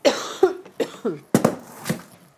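A woman coughing, several coughs in a quick fit.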